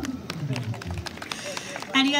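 Scattered hand claps from a small audience as an electric organ song ends, with a few voices.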